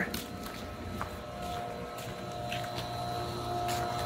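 Hayward Max-Flo XL pool pump motor running: a steady hum with a thin whine that grows stronger and louder as the pump comes closer. A single light click about a second in.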